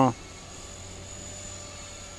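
Radio-controlled model helicopter in flight, its spinning rotor blades and motor giving a steady whir as the blades cut the air.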